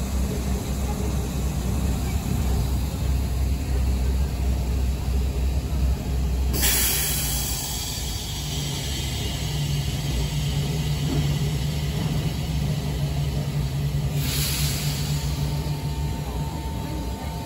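RER B MI79 electric train standing at the platform: a low rumble, then two sudden bursts of compressed-air hiss from its pneumatic system, about six and fourteen seconds in, each fading over a second or so. A steady low hum sets in after the first burst.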